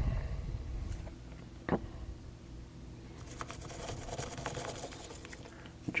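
Toothbrush scrubbing a plastic differential case of an RC truck, with rapid scratchy strokes starting about halfway through. Before that there is quiet handling with a single click.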